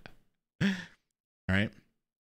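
A man's laugh trailing off in short breaths, then a single short sighing exhale about halfway through, and the spoken word "right" near the end.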